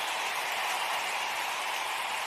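Steady hiss of noise with no beat, melody or voice, the opening sound of a dubbed music track before its spoken intro.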